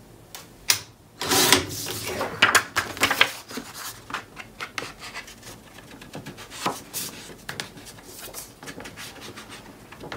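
Cardstock and paper being handled and worked on a craft table: a sharp click just before a second in, a stretch of rustling and scraping, then a string of light clicks and taps.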